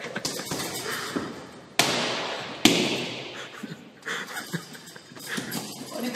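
A hanging heavy punching bag struck hard about four times. Each sudden hit trails off over about a second.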